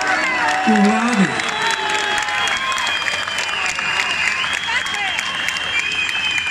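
Outdoor crowd applauding and cheering, with a long high whistle-like tone held over the clapping from about two seconds in.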